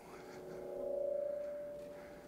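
Sound-system feedback in a PA: a steady ringing tone with a few weaker tones beneath it, swelling to a peak about a second in and then fading away.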